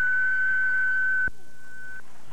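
A steady, high, pure-sounding electronic tone in the glitchy lead-in of an old VHS tape, broken by a sharp click about a second in, after which it goes on more quietly.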